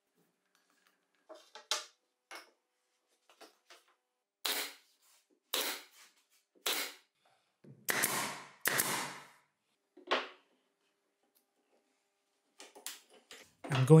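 A nail gun firing into glued plywood strips: about six sharp shots, roughly a second apart, with lighter clicks and knocks of the wood being handled before and after.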